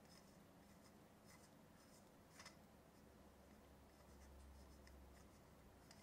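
Near silence with faint rubbing and a few soft clicks: the threaded metal grille head of an sE V7X dynamic microphone being unscrewed by hand.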